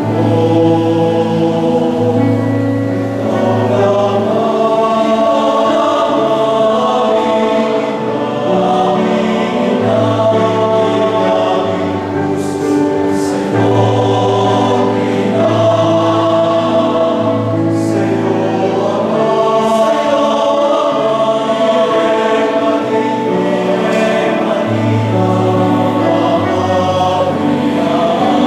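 A male choir of seminarians singing a sacred song in several-part harmony, in long held chords with a strong low bass part.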